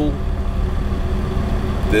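Diesel engine of a 2017 International ProStar truck idling, a steady low hum heard from inside the sleeper cab.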